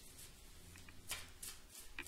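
A deck of tarot cards being shuffled by hand: soft, brief rustles of cards sliding against each other, about three short bursts in the second half.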